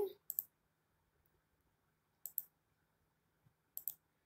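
Faint computer mouse clicks: one just after the start, then a quick pair about two seconds in and another quick pair near the end.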